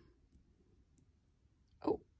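Near silence with a few faint, light clicks as a sewing needle is pressed down into toothbrush bristles over a thread. A woman's short 'oh' near the end.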